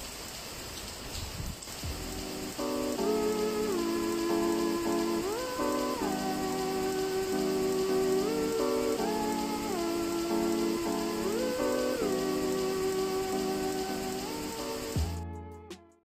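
Steady hard rain falling. From about three seconds in, louder background music plays over it: a repeating melody that slides between its notes, ending on a low note that fades out at the very end.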